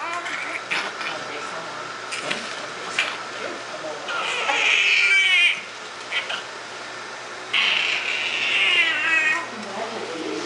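Newborn baby crying: two long, high, wavering cries, the first about four seconds in and the second near eight seconds, with quieter gaps between.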